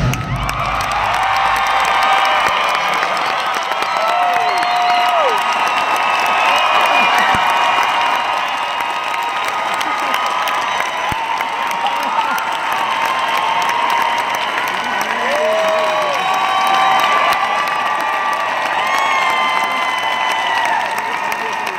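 Large arena crowd cheering and applauding continuously, loud, with many high shouts, screams and whistles rising above the steady clapping.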